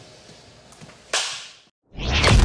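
A single sudden whip-like crack with a hissing tail about a second in, fading over about half a second, over faint background. It cuts to dead silence just before the end.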